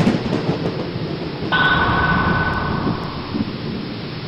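Sound effects for an animated show intro: a sharp hit at the start, then a heavy, noisy rumble like thunder. From about a second and a half in, a bright hiss with a steady high tone sounds over it, and it fades out after three seconds.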